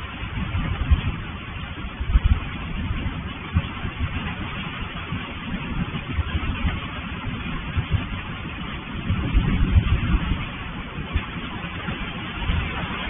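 Steady rain noise with irregular low rumbles, heard through a security camera's microphone.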